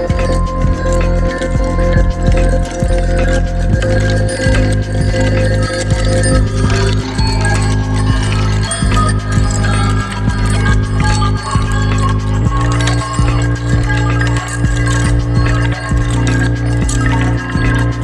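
Electronic music played live through a Chase Bliss MOOD granular micro-looper: a sample looped and warped with delay over sustained bass notes. The bass notes change about four seconds in and again about twelve seconds in.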